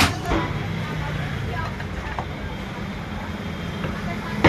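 Two hammer blows on the metal housing of an e-rickshaw gearbox held in a vise, right at the start, followed by a steady low background hum with a few faint clicks.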